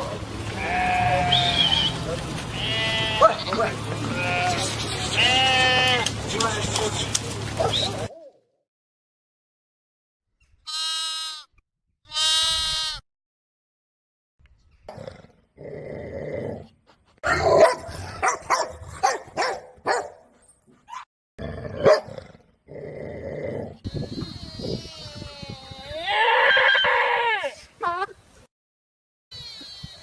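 Goats and sheep bleating: a dense run of calls over a steady low hum for about eight seconds, a short silence, two separate bleats, then scattered bleats among clicks and knocks, with one long bleat near the end.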